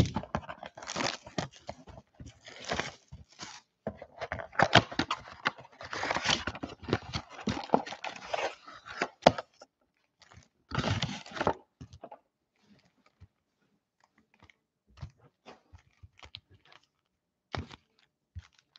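Wrapping torn and crinkled off a sealed trading-card hobby box as it is opened: dense crackling for the first half. Then foil card packs rustle as they are lifted out, with a loud burst about eleven seconds in, and scattered light taps and rustles as they are set down.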